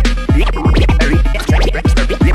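Turntable scratching with a JICO J44A-7 DJ IMP Nude stylus: a record pushed back and forth by hand and chopped with the mixer's fader, in quick strokes that sweep up and down in pitch. Under it runs an electro beat with a deep kick about twice a second.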